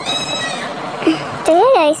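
A woman's voice speaking, with one long drawn-out call that rises and falls in pitch near the end.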